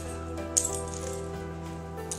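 Background music with long held notes. About half a second in comes a single sharp, bright metallic clink.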